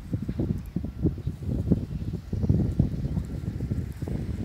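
Wind buffeting the microphone: an irregular low rumble of gusts with no steady tone.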